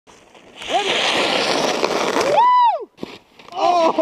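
Snowboard sliding and scraping over icy snow, a loud hiss that cuts off suddenly just before three seconds in, with a short shout over it. Laughter starts near the end.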